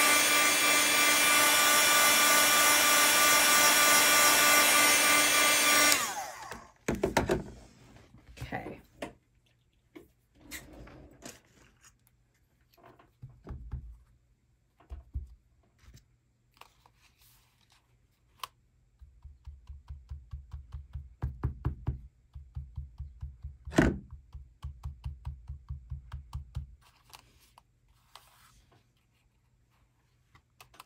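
Heat gun blowing steadily, held well back to dry ink on shrink plastic without shrinking it, cutting off about six seconds in. Then scattered light taps and a long run of quick dabbing taps from a foam finger dauber pouncing ink through a plastic stencil, with one sharper knock partway through.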